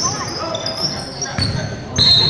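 A basketball being dribbled on a hardwood gym floor, its bounces thudding in a large echoing hall, with voices from players and spectators.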